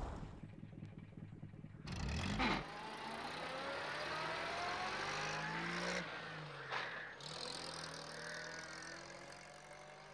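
Small van engine pulling away and accelerating, its pitch climbing steadily, with a dip in pitch about six seconds in before it climbs again.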